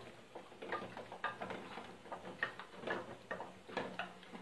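Wooden spoon stirring melting wax in a small metal pot, knocking against the pot's sides in a string of irregular light ticks and taps.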